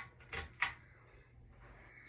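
Two sharp clicks about half a second in from the pull-chain switch of a 42-inch ceiling fan as the chain is tugged, setting the fan going.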